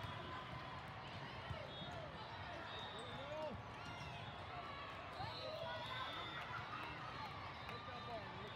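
Many voices of players and spectators at an indoor volleyball match calling and chattering over one another, with a few short sharp thuds of the ball being struck.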